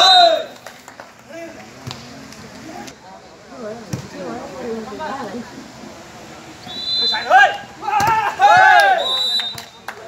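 A volleyball rally: the ball is struck with a few sharp slaps, and players and spectators shout loudly at the start and again in a burst of yelling and cheering near the end, with short, high, whistle-like tones among the shouts.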